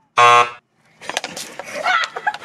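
A loud wrong-answer buzzer sounds for about half a second. From about a second in, water splashes down in a noisy rush with scattered spatters.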